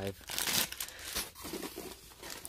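Clear plastic bag crinkling in the hands, with irregular crackles as the bagged cable inside is handled.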